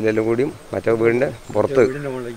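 A man speaking in short phrases with brief pauses.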